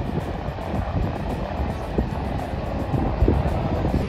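Outdoor noise of wind buffeting the microphone and road traffic, a steady low rumble, with faint background music over it.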